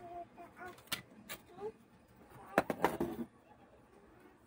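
A few sharp clicks and clacks from a graphics card board and its metal backplate being handled, the loudest cluster a little before three seconds in, with faint voices in the background.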